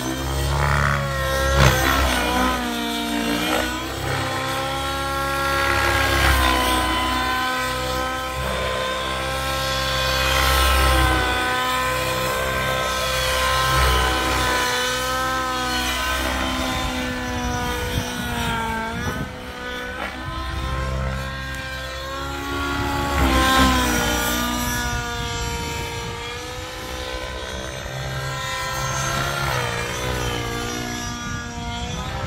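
SAB Goblin Raw 700 Nitro radio-controlled helicopter in flight, its nitro engine and rotor running continuously with the pitch rising and falling as it manoeuvres. Louder surges with sharp pitch swings come about two seconds in and again a little past the middle.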